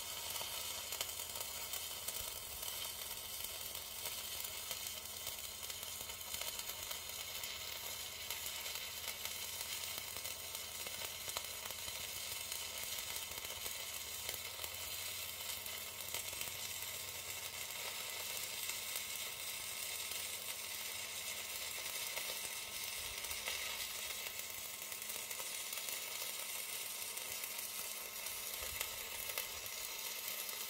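Stick-welding arc of a Chem-Weld 7100 rutile-basic electrode (2.5 mm) burning steadily with a continuous crackling sizzle, struck and run through oily sludge on contaminated steel. The arc holds stable along the run.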